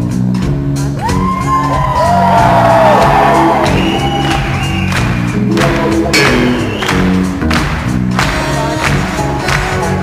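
Live band playing in a hall: acoustic guitar, violin and drum kit keeping a steady beat, with singing. Long gliding high notes sound between about one and four seconds in.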